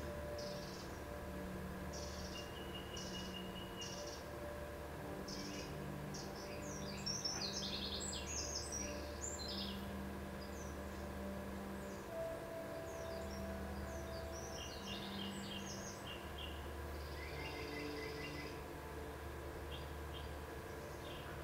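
Faint birdsong, a scatter of short chirps and trills that grows busiest a few seconds in and again later, over a steady low room hum.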